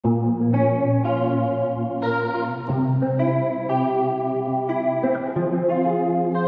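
Afrobeat instrumental intro: an electric guitar with a chorus effect plays a run of sustained chords that change about every half second to a second, with no drums yet.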